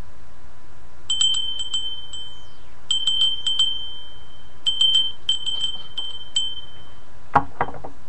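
A small handbell rung in short bursts of a few quick strokes, each ringing at the same single high pitch, five or six times over several seconds. Near the end comes a louder knock with a rustle.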